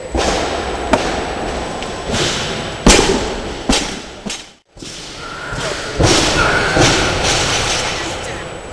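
A loaded barbell with bumper plates is dropped from overhead onto a wooden lifting platform. It lands with a heavy thud about three seconds in, followed by a smaller bounce. Other thuds of bars and plates sound in the hall before and after it.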